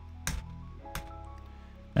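Quiet background music of steady held notes, with two sharp computer-keyboard key clicks.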